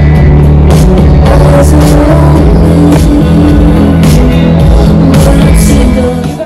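Loud live band music through a concert sound system, with a heavy bass line and a steady drum beat.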